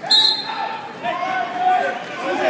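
Spectators shouting at a wrestling bout in a gym hall, their calls rising and falling, with a sharp thud on the mat just at the start.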